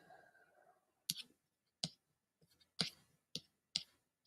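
About five sharp, separate clicks at uneven intervals, typical of a computer mouse being clicked.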